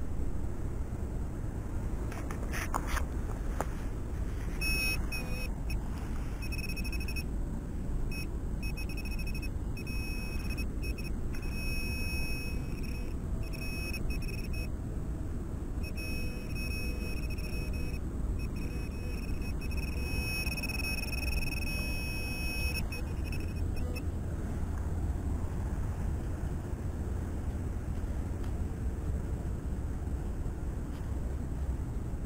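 Metal detecting pinpointer giving a high electronic beep that switches on and off over and over, in short and longer tones, while it is worked over a target in a dug hole: the tone signals metal at its tip. It stops a few seconds before the find comes out. A few sharp scraping clicks come near the start, over a steady low rumble.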